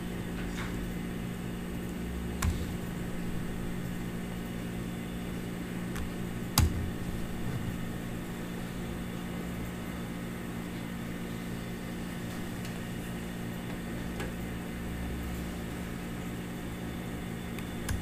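Steady low electrical hum of room and machine noise, with a few isolated sharp clicks from mouse and keyboard use; the loudest clicks come about two and a half and six and a half seconds in.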